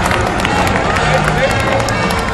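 Crowd of spectators talking and calling out, with scattered claps.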